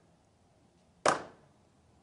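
Wooden gavel rapped once on its block, a sharp knock with a brief ring-off about a second in, one of a slow series of raps.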